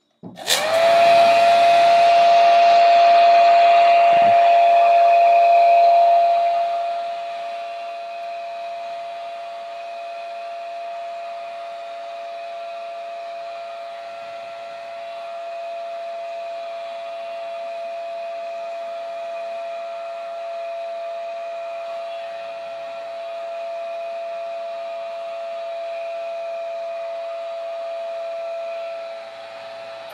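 Old hand-held hair dryer switched on: its fan motor spins up within a second to a steady whine with a rush of air. It becomes quieter about six seconds in and runs on steadily until it is switched off at the very end, the whine starting to fall.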